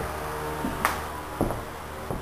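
Two short clicks about half a second apart, the first sharper, over a low steady hum.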